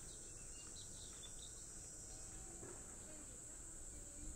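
Faint, steady high-pitched drone of insects in the surrounding trees, holding level without a break.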